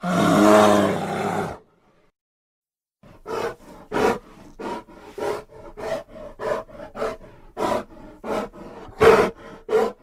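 Grizzly bear roaring, edited from a film's sound effects: one loud pitched roar lasting about a second and a half, then after a short pause a rhythmic run of about a dozen short roars, the loudest near the end.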